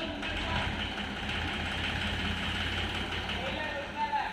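A farm tractor's diesel engine runs steadily at idle, a low even rumble, with a steady hiss higher up.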